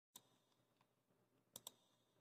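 Near silence with three faint clicks: one just after the start and two in quick succession about a second and a half in.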